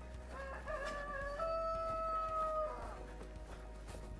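A rooster crowing once: a wavering opening followed by a long held note, the whole cock-a-doodle-doo lasting about two and a half seconds.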